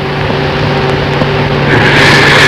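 A steady low hum with hiss from the recording, in a pause between the dengbêj singer's sung phrases. The hiss grows louder near the end, just before the voice returns.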